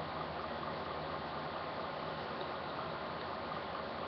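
Steady, even hiss of room noise with no distinct events.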